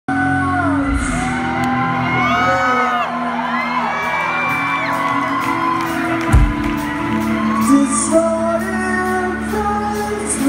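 Synth-rock band playing live: singing over synthesizer, electric guitar and drums, heard from within the audience in a large hall.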